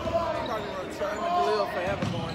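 A basketball bouncing on a hardwood gym floor, with a few short thuds under people talking.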